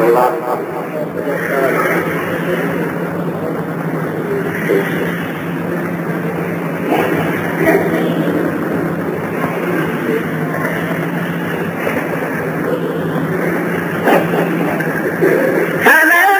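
Indistinct voices under a steady low hum and a dense noisy haze, with no words clear enough to make out.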